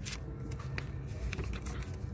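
A few faint ticks and rustles of comic books in their bags being handled in a store bin, over a low steady background hum.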